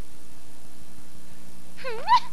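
Steady low hum and hiss of an old film soundtrack. Near the end, a short cry begins that rises in pitch.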